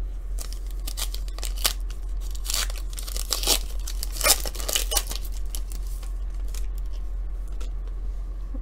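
Foil wrapper of a trading-card pack being torn open and crinkled, with a run of sharp tearing rips from about two and a half to five seconds in, over a steady low hum.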